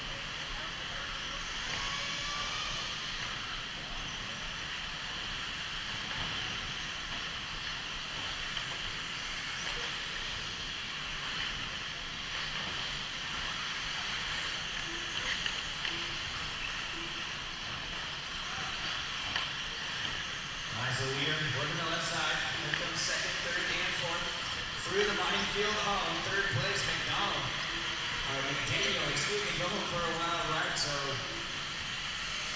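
1/8-scale electric RC buggies racing on a dirt track: a steady high whine of motors and tyre noise in a reverberant hall. About two-thirds of the way in, a voice over the PA joins, along with several sharp clacks.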